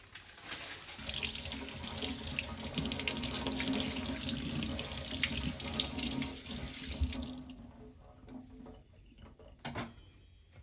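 Kitchen tap running into a stainless steel sink as cucumbers are rinsed by hand under the stream. The water stops about seven and a half seconds in.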